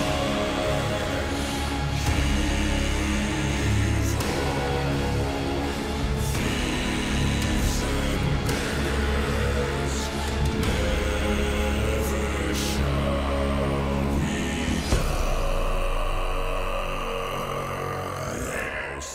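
Metal cover of a sea shanty sung by deep bass voices over a heavy, dark backing, with strong hits about every two seconds; about 15 seconds in it opens out into a long held chord.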